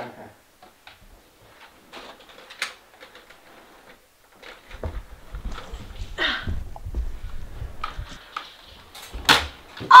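Footsteps and handling noise from a Nerf blaster being carried, with scattered light clicks. A sharp snap near the end is the loudest sound.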